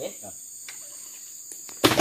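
A steady, high insect buzz, with a sudden loud knock or thump just before the end.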